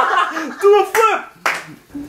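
Excited voices calling out and laughing, followed by a couple of sharp smacks about halfway through.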